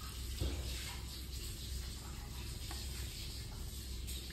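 Thin gravy simmering in an iron kadai, a faint steady hiss and bubbling over a low hum, with a soft plop about half a second in as cubes are tipped into the liquid.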